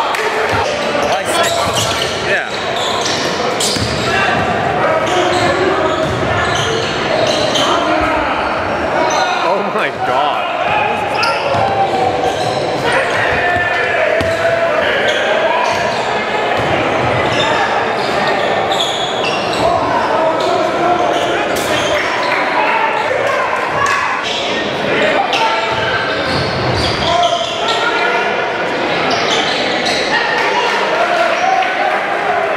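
Live basketball game sound in a large gym: the ball bouncing on the hardwood court over continuous crowd chatter and shouting.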